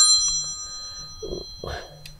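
A smartphone's bell-like ringtone stops as the call is declined with a quick text reply, and its tones die away over about a second. A couple of faint soft sounds follow near the end.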